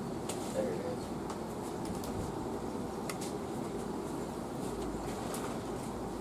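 Steady low background noise with faint, indistinct voices and a few light clicks.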